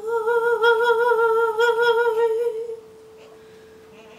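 A woman's voice holds one long wordless note with vibrato over a sustained electronic keyboard note. The voice stops about two and a half seconds in, and the keyboard note keeps sounding softly.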